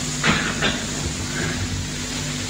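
Steady background hiss with a low electrical hum, the recording's own noise floor in a pause of speech. There is a brief soft sound about a quarter second in and a fainter one just after.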